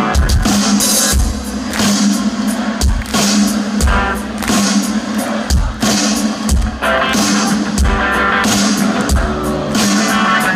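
Rock band playing live, heard from the audience: an electric guitar solo over a heavy kick-drum beat and bass.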